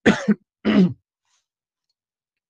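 A person clearing their throat twice in quick succession: two short, rough bursts about half a second apart.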